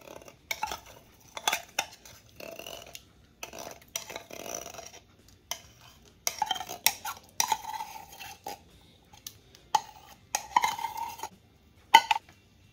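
A utensil scraping out the metal can of sweetened condensed milk over a glass mixing bowl: irregular bursts of scraping and clinks, some with a squeak.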